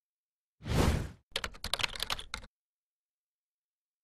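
Sound effects on an animated title: a short whoosh about half a second in, then a rapid run of sharp clicks lasting about a second before cutting off.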